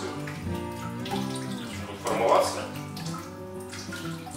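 Whey running and splashing back into a steel pot as a cloth-wrapped cheese curd is held up to drain just after being lifted from the vat, over background music.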